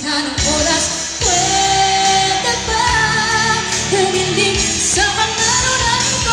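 A female singer singing live into a microphone over a band backing, holding one long note about a second in.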